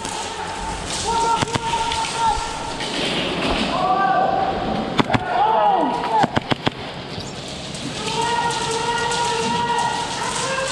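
Airsoft gunfire: a quick string of sharp cracks about five seconds in and a few more scattered shots over the next second and a half, with players shouting across the arena.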